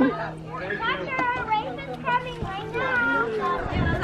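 Children playing and calling out, several high voices overlapping, over a steady low hum that stops shortly before the end.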